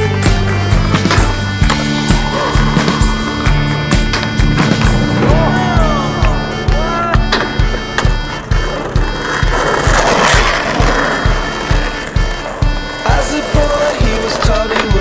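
Music with a steady beat over skateboard sounds: urethane wheels rolling on asphalt, and boards popping and landing on a wooden box and the ground.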